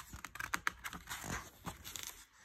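A picture book's paper page being turned by hand, with faint irregular rustling and crinkling of the paper.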